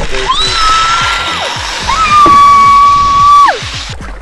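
A person screaming on a zipline ride: two long, high screams, each rising at the start, held steady and then dropping away, the second one longer. A steady rushing hiss runs under them.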